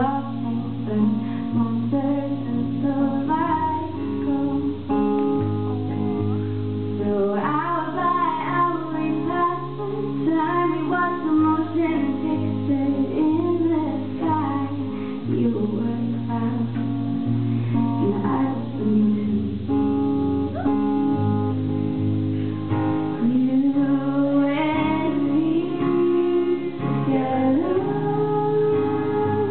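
A woman singing a slow folk-pop song while accompanying herself on a strummed acoustic guitar, live.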